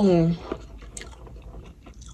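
A person chewing food close to the microphone, with a couple of short, sharp clicks about half a second and a second in.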